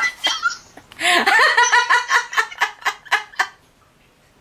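A woman laughing heartily: a short burst at the start, then from about a second in a long run of quick rhythmic ha-ha pulses that stops shortly before the end.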